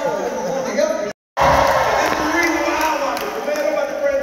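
A man's voice speaking in a large hall, the words unclear. The sound cuts out completely for a moment just after a second in.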